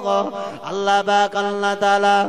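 A man's voice chanting a waz sermon in melodic sung style: a few short sliding syllables, then one long held note.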